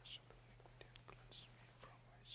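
Near silence with a priest's faint whispering of a quiet private prayer, a few soft hissing 's' sounds standing out, over a steady low hum.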